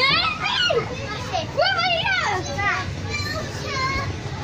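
Several young children's high voices shouting and calling out at play, overlapping in short bursts, with no clear words.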